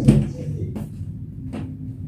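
A sharp knock at the start, then two lighter clicks about a second apart: a cupboard or door being handled. A faint steady hum sets in after the last click.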